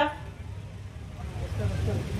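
A pause in an outdoor speech: a steady low rumble of background noise, with faint voices in the second half.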